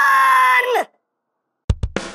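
A high, drawn-out yell held on one pitch that slides down and cuts off under a second in, followed by a short silence. Near the end, drum hits from the intro music start.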